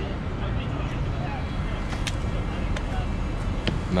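Steady low rumble of city street noise and wind on the microphone, with a few faint sharp clicks in the second half.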